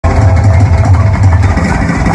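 Drums and guitar opening a song: a loud, low rumbling roll on the drums with cymbal wash, under a held guitar note.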